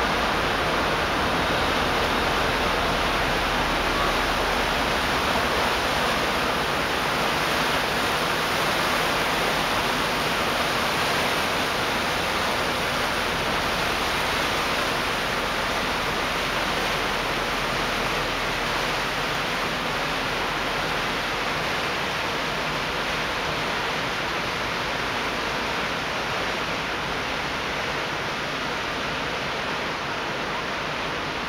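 Steady rushing of water, easing slightly over time, with a low rumble underneath that fades out about two-thirds of the way through.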